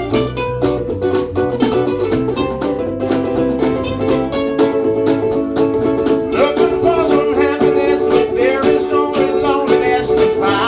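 Two ukuleles strummed in a steady rhythm over an electric bass line, in a live instrumental passage. A wavering melody line joins in from about six seconds in.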